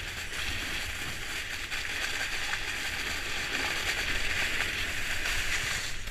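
Skis gliding steadily over packed snow: a continuous hiss, with wind rumbling on the helmet-camera microphone.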